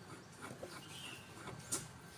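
Faint, light clicks of a hand wrench working a bolt on a scooter's engine casing, with one sharper click about three-quarters of the way through.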